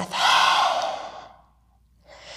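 Lion's breath: a woman's forceful open-mouthed exhale, a breathy "haaa" that fades out over about a second and a half.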